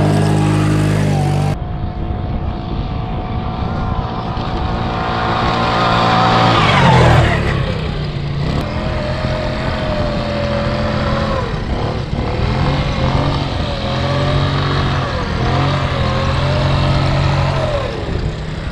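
Quad bike engine running and revving as it is ridden over sand, its pitch rising and falling with the throttle. One long rev climbs to a peak about seven seconds in, followed by shorter repeated throttle surges.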